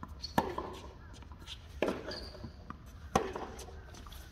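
Tennis balls struck by rackets in a baseline rally on a hard court: three sharp hits about a second and a half apart, each echoing briefly off the empty stadium stands, with short high squeaks between them.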